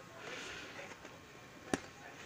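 Faint handling noise from hands on a plastic motorcycle seat base: a soft rubbing in the first half, then a single sharp click near the end.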